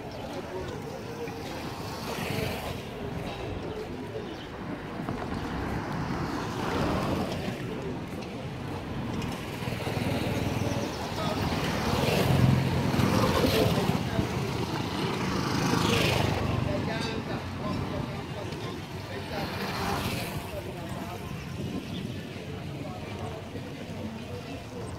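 Roadside street traffic: small motorcycles pass close by, loudest about halfway through, over a steady wash of traffic noise. People's voices can be heard in the background.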